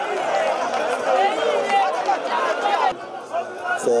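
Many overlapping voices shouting and calling at a football match, dying down about three seconds in. A man's commentary voice starts near the end.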